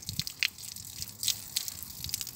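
Red wine pouring from an upturned glass bottle in a thin stream onto the ground, splashing faintly, with a few small clicks.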